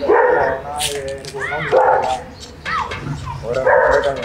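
A dog barking and yelping: loud barks at the start, about two seconds in and near the end, with short rising-and-falling yelps in between.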